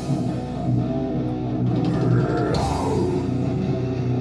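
A live heavy rock band playing: distorted guitars and bass over a drum kit, with crashing cymbals. A note slides down in pitch around the middle, and the cymbals come in strongly just after it.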